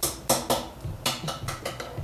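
Fingerboard clacking on a hollow fingerboard box obstacle: a run of sharp, irregular clicks and knocks, several a second, as the small board's wheels and tail strike and roll on the box top.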